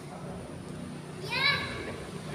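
A child's short high-pitched shout during a futsal game, its pitch rising then falling, a little over a second in, over a steady low hum.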